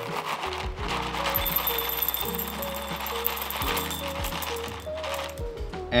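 Whole coffee beans poured from a bag into a dosing cup on a scale: a dense run of small clicks and rattles that stops near the end, over background music.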